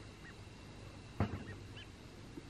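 Quiet outdoor ambience with a few faint, short bird calls, and one sudden louder sound a little after a second in.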